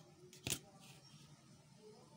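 A single sharp click about half a second in as a clear plastic ruler is set down on the drawing sheet, followed by a faint short scrape as it slides into place.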